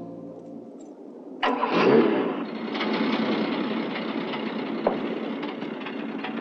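A car engine starts about a second and a half in and then runs steadily. There is a short click near the end.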